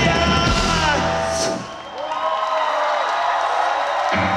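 A live alternative rock band with singing and electric guitar finishes a song about a second and a half in. A crowd cheering and whooping follows.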